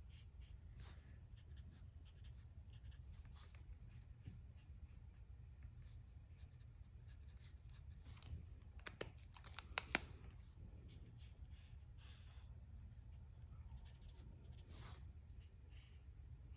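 Faint scratching of an alcohol marker nib stroking colour onto cardstock, with a few sharp clicks about nine to ten seconds in.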